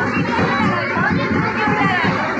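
Crowd chatter dominated by many children's voices, with music with a beat running underneath.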